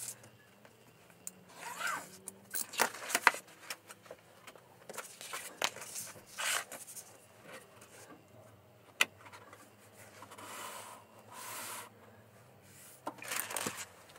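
Craft knife cutting book cloth along a steel ruler on a cutting mat: a series of short scraping strokes. Then the cloth and the slipcase are handled and shifted about, with rubbing noises and a sharp tap about nine seconds in.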